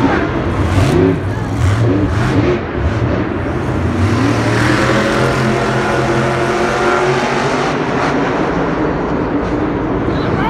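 Monster truck's supercharged V8 engine running and revving as the truck drives on the dirt arena floor, its pitch rising through the middle.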